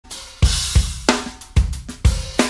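Drum kit solo: four heavy accents in under two seconds, each a cymbal crash over a bass drum hit, with the cymbals ringing on between strokes.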